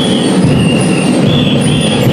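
Drum and lyre band playing: a dense, steady drum beat under a run of high, ringing held notes, each about half a second long and stepping in pitch.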